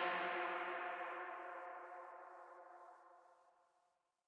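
The final synth chord of a techno track ringing out, several held tones fading steadily and dying out about three seconds in.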